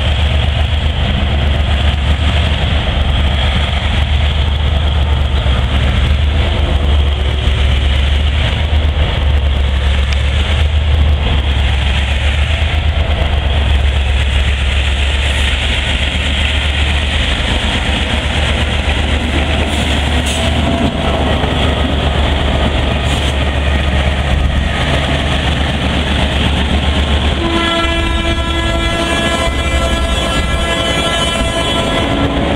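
Metre-gauge diesel freight locomotive approaching and passing close by, its engine running with a loud, deep, steady drone. About two and a half seconds before the end its horn starts a long, steady blast.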